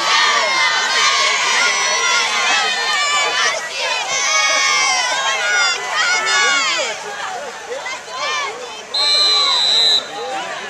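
Football crowd in the stands shouting and cheering, many voices overlapping, loud. A steady high whistle sounds for about a second near the end.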